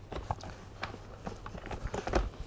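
Faint, scattered light clicks and knocks from the frame of a folded Bumprider Connect V2 stroller as it is handled.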